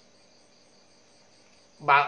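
Faint, steady, high-pitched trilling of insects, probably crickets, in the background during a pause in speech. A man's voice starts loudly near the end.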